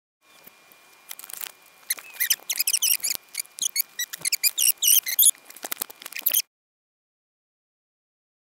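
Foam packaging squeaking and rustling as it is handled: a rapid, uneven run of high squeaks and small clicks that cuts off suddenly about six and a half seconds in.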